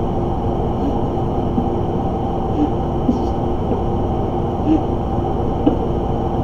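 Steady room hum with a few faint even tones running through it, broken by a couple of small soft ticks.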